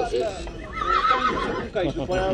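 A draft horse whinnying: one quavering call about a second long, starting about half a second in.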